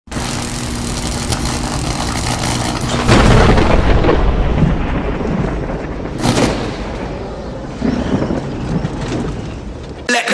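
Cinematic logo-reveal sound effects: a low rumbling drone, a heavy boom about three seconds in, a short whoosh about six seconds in and a lighter hit near eight seconds.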